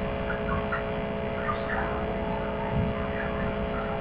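Steady electrical hum with background hiss, in a pause between speech.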